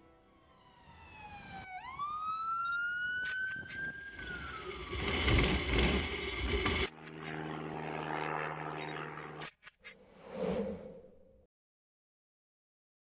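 A run of cartoon sound effects. A whistling tone slides down, swoops up and falls away, then comes a rushing noise with sharp clicks, a steady low buzzing hum, a few clicks and a short puff. The sound cuts off shortly before the end.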